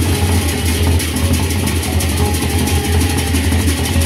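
Gendang beleq ensemble playing: large Sasak barrel drums beaten under fast, dense cymbal strikes, over a deep continuous low drone.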